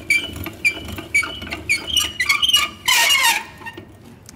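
Old hand-cranked pasta machine squeaking as its crank is turned and the spaghetti-cutting rollers run, short high squeaks about twice a second over the low rumble of the gears, with a louder burst about three seconds in. The squeak comes from the machine's age.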